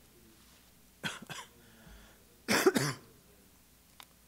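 A person coughing: two short coughs about a second in, then a louder double cough about two and a half seconds in.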